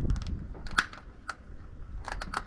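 Small plastic clips of a truck's air breather housing being snapped back together by hand: a quick cluster of light clicks just after the start, then two single clicks.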